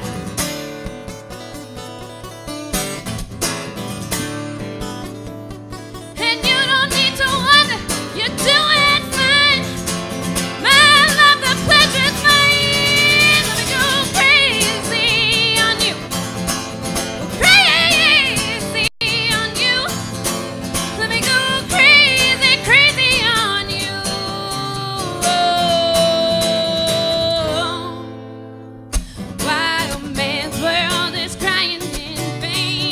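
Live acoustic guitar playing alone for about the first six seconds, then a woman singing over it. The singing breaks off briefly near the end and comes back.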